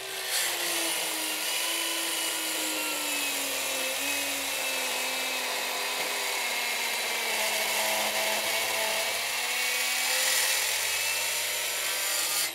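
Milwaukee M12 Fuel cordless circular saw with a 36-tooth finish blade making a maximum-depth cut through a hard maple block. The motor runs steadily under heavy load, and its pitch sinks slowly through the cut as the blade slows.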